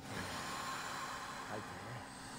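A long, steady breath out on a cue to exhale, as part of a breathing exercise.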